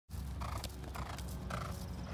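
A horse walking on grass, soft hoofbeats about twice a second, over a steady low rumble.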